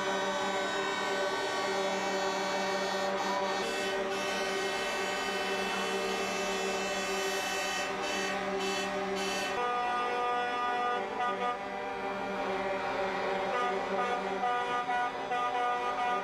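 Many truck air horns sounding at once, held as a steady mass of overlapping pitches; about ten seconds in the mix of pitches changes as a different set of horns takes over.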